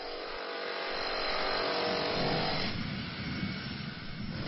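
A motor vehicle passing, its engine and tyre noise swelling to its loudest about two seconds in, then fading away.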